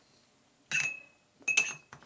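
A paintbrush clinking twice against a glass water jar as it is dipped in to rinse. Each clink is sharp and leaves a short ring, the first ringing a little longer.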